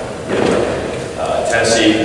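Speech only: a man giving a talk in a large gymnasium.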